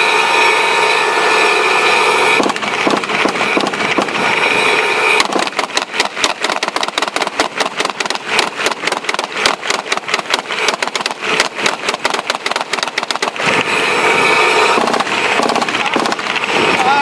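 A tank's engine running with a high whine. About five seconds in, it gives way to some eight seconds of rapid gunfire, several shots a second, and the engine whine returns near the end.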